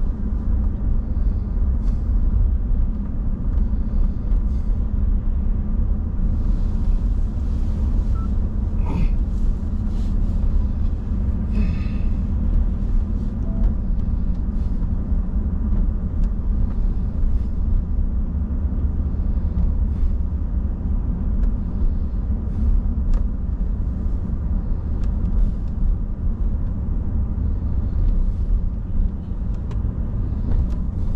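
Steady low engine and road rumble heard from inside a vehicle's cab while driving along a town street.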